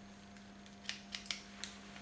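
Hairdressing scissors snipping through long hair, four sharp snips in quick succession in the second half, over a faint steady hum.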